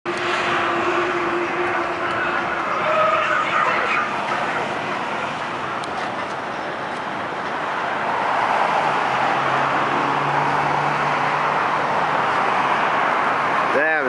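Steady rush of road traffic noise from passing vehicles, with a faint low engine hum about nine seconds in.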